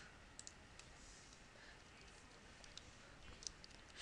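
Near silence: faint room tone with a handful of scattered, faint clicks from a computer mouse and keyboard as data is entered.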